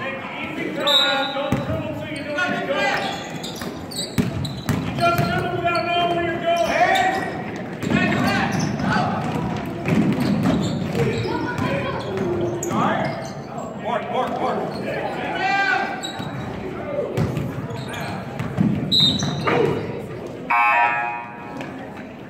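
Basketball bouncing on a hardwood gym floor, with repeated thuds, amid shouting voices of players and spectators echoing in a large gym. A short pitched tone sounds near the end.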